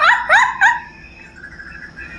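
A woman giggling in high-pitched squeals: three short rising squeaks in quick succession in the first second, then quieter.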